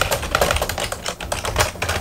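Fast typing on a computer keyboard: a dense, irregular run of key clicks.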